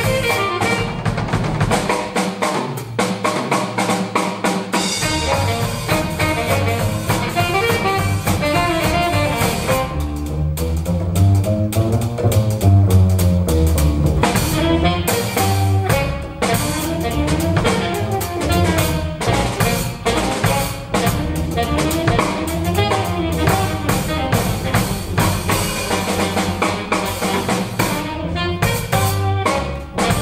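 Live jazz trio of saxophone, double bass and drum kit playing together. From about ten to fourteen seconds in the cymbals thin out and the double bass comes forward.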